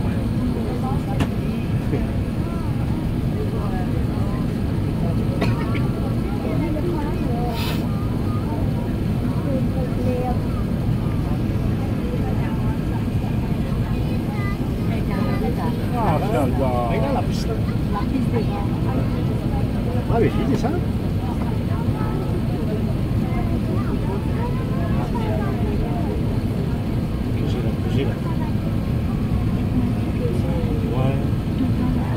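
Steady low cabin roar of an Airbus A380 on final approach: engine and airflow noise heard from inside the passenger cabin. Passengers' voices murmur over it, and there is a single click about eight seconds in.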